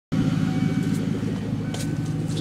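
A car engine idling: a steady low hum, with a short click near the end.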